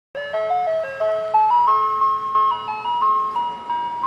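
Channel intro music: a simple melody of clear stepped notes that climbs over the first two seconds, then moves around one pitch.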